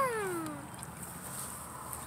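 A drawn-out human vocal sound sliding down in pitch and fading out within the first half second or so. Then only faint, steady outdoor background.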